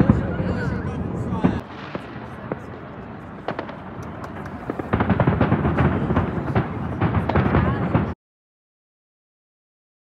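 Fireworks going off: bangs and crackling over the voices of a crowd, with a dense run of crackling from about five seconds in. The sound cuts off abruptly about eight seconds in.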